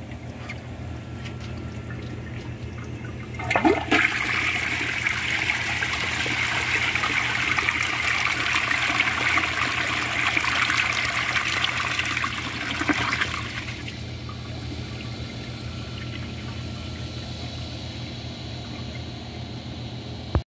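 1997 American Standard Cadet 2 toilet flushed about three and a half seconds in: a sharp start, then about ten seconds of rushing water through its many rim jets, dropping near 13 s to the quieter hiss of the tank refilling. The flush does not end in a siphon gurgle; the owner says it acts more like a washdown than a siphon.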